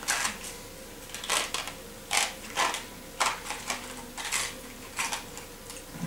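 A small candy wrapper crinkling as it is handled and opened, in a string of short crackles about once or twice a second.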